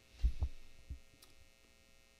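Three soft low thumps in the first second, over a faint steady electrical hum.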